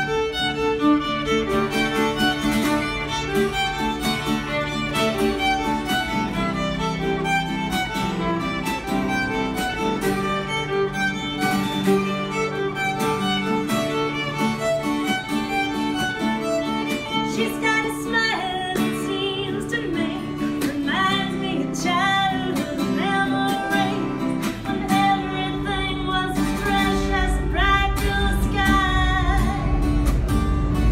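A violin plays a lively melody over acoustic guitar accompaniment, a fiddle-and-guitar busking duo, with the fiddle's line wavering with vibrato in the second half. A low rumble builds under the music near the end.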